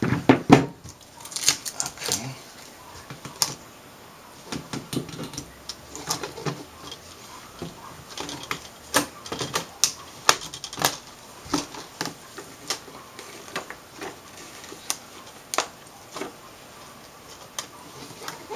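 Irregular light clicks and knocks of plastic and metal LCD panel parts being handled and set against each other during reassembly, the loudest near the start.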